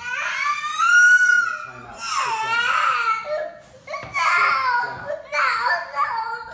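Toddler crying, four long, high-pitched wails one after another, the first about two seconds long, rising and then falling.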